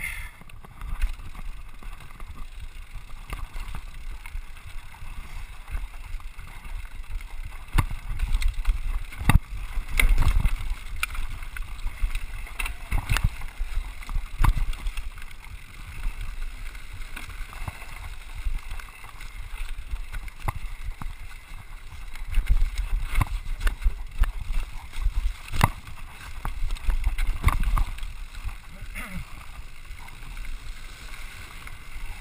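A 2012 Scott Scale RC 29 carbon hardtail mountain bike running fast downhill over a dirt and stone trail: steady tyre and rolling rumble with many sharp knocks and rattles as it hits roots and rocks, the hardest ones about ten seconds in and again from about two-thirds of the way through.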